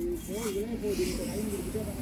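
Faint speech in the background, well below the speaker's own voice, with a short hiss at the very start.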